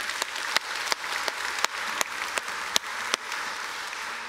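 A congregation applauding in a large, reverberant church, the clapping easing off slightly near the end.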